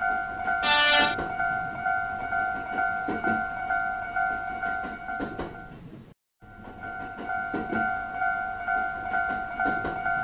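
Japanese railroad crossing (fumikiri) warning bell ringing steadily at about three dings a second. A short, loud train horn blast sounds about a second in. The bell cuts out briefly about six seconds in, then resumes.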